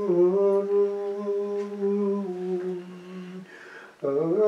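A single voice chanting plainchant in long held notes that step gently downward, the phrase fading out about three and a half seconds in before the next one begins.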